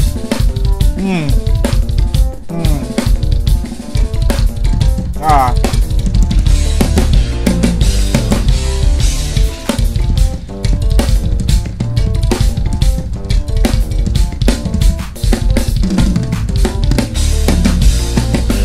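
Acoustic drum kit played at speed: dense, rapid strokes across snare and toms with bass drum and Zildjian cymbal hits.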